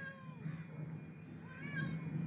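A cat meowing faintly, one short call near the end, over a steady low hum.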